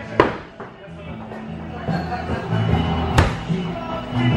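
Thrown hatchets striking wooden plank targets: a loud impact with a short ring about a fifth of a second in, and a second sharp hit about three seconds in. Rock music plays in the background.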